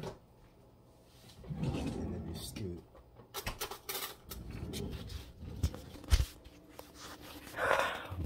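Kitchen handling noise: scattered knocks and clatters of things being set down and moved on a counter, with a sharp bump about six seconds in.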